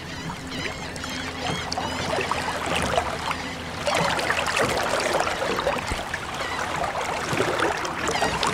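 Water splashing and trickling, a sea sound for a ship moving on the water, with a few short high chirps in the first two seconds; it gets louder about four seconds in.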